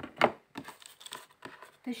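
Tarot cards being handled on a table: one loud rustling swish just after the start, then a few light clicks and taps of cards.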